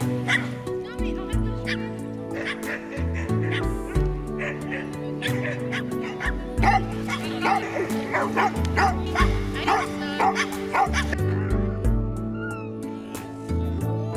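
Background music with a stepping bass line, with dogs barking repeatedly over it.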